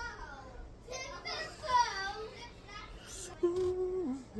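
Indistinct voice sounds without clear words, ending in a short, steady hum.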